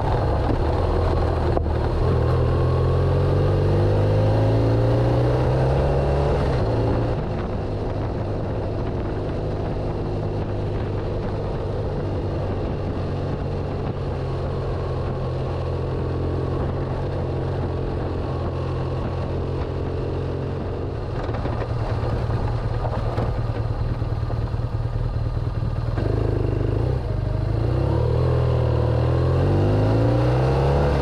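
BMW GS adventure motorcycle engine running under way, heard from the handlebars with wind and road noise. The engine note climbs as it accelerates in the first few seconds, holds steadier through the middle, and climbs again near the end.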